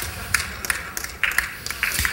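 Audience laughing, with scattered claps at an irregular pace.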